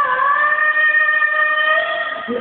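A young man singing one long, high note in a high voice, held steady.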